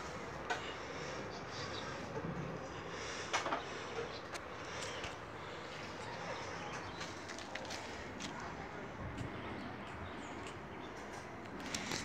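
Low, steady background noise with a few soft clicks and knocks from a hand-held phone being moved about; the clearest knock comes about three seconds in.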